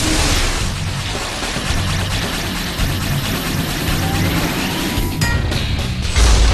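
Cartoon launch sound effect: a long, loud rushing noise for a monster-core being launched and released, over driving action music with a pulsing bass. The rushing breaks off briefly about five seconds in.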